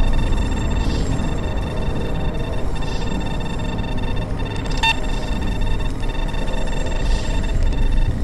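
Dark ambient drone: a deep, steady rumble under a held high tone that breaks off briefly several times, with faint swells about every two seconds and a short click about five seconds in.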